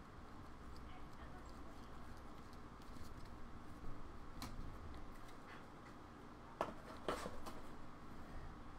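Trading cards being handled: faint sliding and rustling of cards through the hands, with a few sharp clicks and taps as cards are set down, two around the middle and two louder ones near the end.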